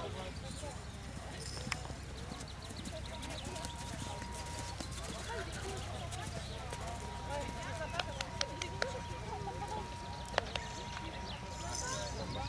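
Horse cantering on a sand arena, its hoofbeats faint under distant voices and outdoor ambience. A few sharp clicks come in the second half, with a steady high tone running under them.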